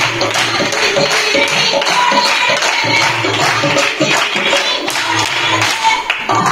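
Punjabi folk music for gidha dancing: a fast, steady percussive beat with handclaps and some singing.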